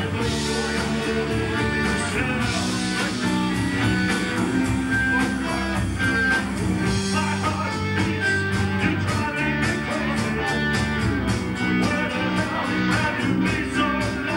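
Live rock band playing: electric guitars, bass and drums with a singer's vocals. Drum hits come through more plainly in the second half.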